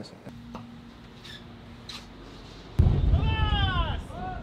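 Quiet ship's-bridge room tone with a faint steady hum. About three seconds in it switches to loud wind buffeting the microphone on the open deck, with a high call that slides down in pitch near the end.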